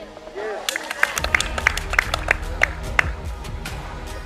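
A few spectators clapping and shouting as a goal goes in, with sharp, irregular claps bunched in the first three seconds, over music underneath.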